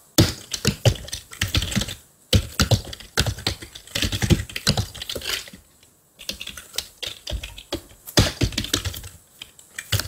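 Computer keyboard being typed on in quick runs of keystrokes, with short pauses about two seconds in and about six seconds in.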